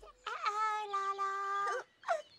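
A high, wordless vocal call from a Teletubby character, held steady for about a second and a half and lifting in pitch just before it stops.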